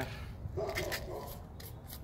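Small metal tin of air-rifle pellets being handled and its lid opened: light scraping and a few small clicks.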